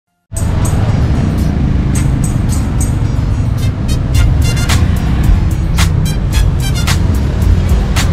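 Intro music with a heavy bass and a steady beat, starting abruptly just after the start.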